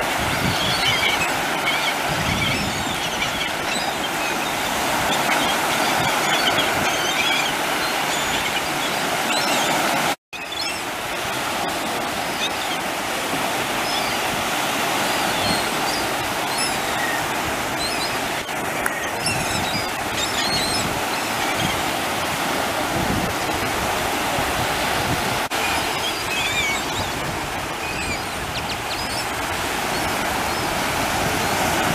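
Waves washing and lapping, with many gulls calling in short high cries throughout. The sound cuts out completely for a moment about ten seconds in.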